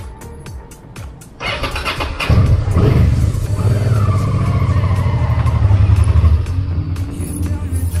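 Motorcycle engine running loud, cutting in abruptly about a second and a half in, with music playing alongside.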